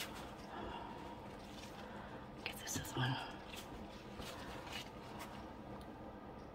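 Quiet room with a low steady background and a few faint small clicks, with a brief soft murmur of a voice about three seconds in.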